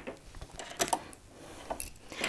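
A couple of faint, light clicks, one a little under a second in and another near the end, from small parts of a Brother sewing machine's presser-foot assembly being handled as the screw and ankle come off.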